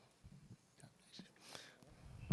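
Near silence with a faint whispered voice.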